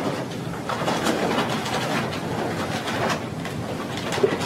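Rustling and crinkling of an evidence bag being handled close to a microphone, in irregular crackles.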